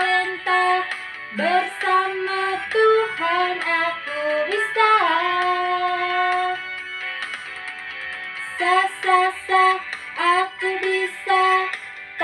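A children's Sunday school action song: a woman singing a melody over backing music, in short bouncy notes with a long held note about five seconds in, then a softer stretch before the bouncy notes return.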